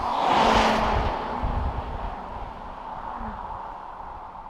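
A car going by: engine and tyre noise swell to a peak about half a second in, then fade away.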